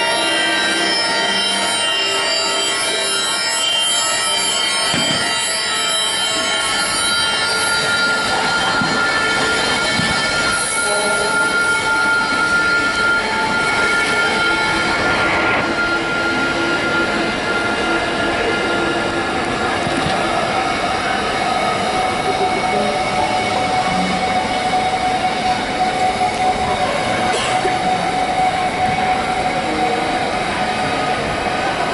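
Electronic music score of layered held tones over a dense noise texture. A high held tone carries the first half, and a lower one takes over from about two-thirds of the way through.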